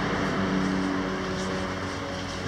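A steady motor hum with a rushing noise, slowly fading.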